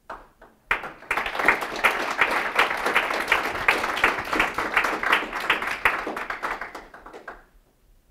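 Audience applauding at the end of a talk: a dense patter of many hands clapping that starts just under a second in and dies away near the end.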